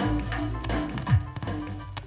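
Reggae mix playing from a 45 rpm 12-inch vinyl record on a turntable: bass line and drums, with a drum hit that drops in pitch a little past halfway.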